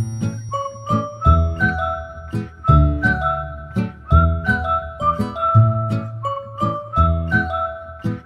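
Background music: an upbeat track with a steady beat, a low bass line and a high, bright melody.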